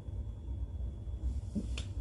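Quiet swallowing while drinking cola from a glass, over a steady low hum, ending in a single sharp click as the glass comes away from the mouth.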